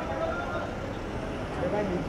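Steady low rumble of vehicle engines with indistinct voices of people around.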